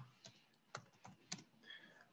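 Faint computer keyboard typing: about five separate key clicks spread over two seconds.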